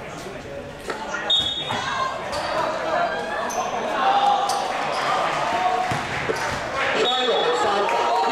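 Pickup basketball game in a gym hall: a ball bouncing on the court with scattered sharp knocks, and players calling out, echoing around the hall.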